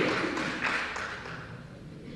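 Applause from a congregation fading away, dying out about a second and a half in.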